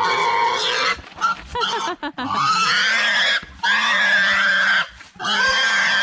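A large domestic pig squealing loudly in a string of long screams, each about a second, with short breaks between them, as it is roped and forced to get up and walk.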